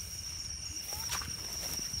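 Night insects keeping up a steady, high-pitched trill over a faint low rustle, with a single click about a second in.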